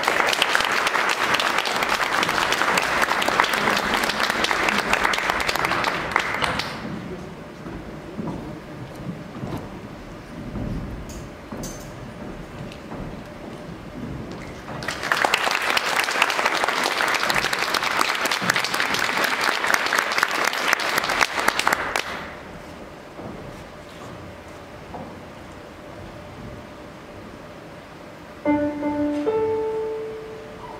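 Audience applause in a hall, in two rounds of about seven seconds each with quieter room sound between. Near the end a few short held notes sound.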